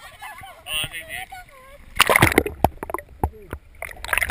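Women laughing and chattering, then about halfway through a loud splash and rush of water as the waterproof action camera plunges below the pool surface, followed by a scatter of sharp clicks and knocks.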